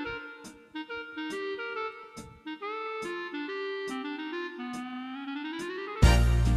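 Lowrey Legend Supreme electronic organ playing a solo melody line of held notes, with a rising pitch glide over the last second or so. A louder, fuller accompaniment comes in right at the end.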